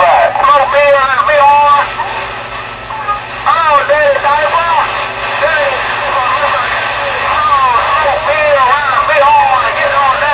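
A distant station's voice received over a CB radio, coming in thin and narrow-toned through the receiver's speaker with a steady hum beneath it, the words not clear enough to make out.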